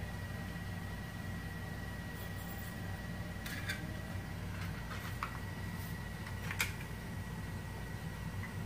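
Steady low electrical hum with a thin high whine above it, and a few light clicks from a metal paper hole punch being handled and worked apart, about midway through.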